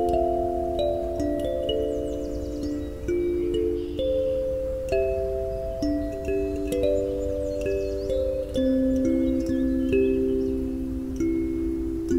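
Kalimba with metal tines on a wooden box body, plucked by thumbs to play a slow worship-song melody, with several notes ringing over one another and a new note every second or so.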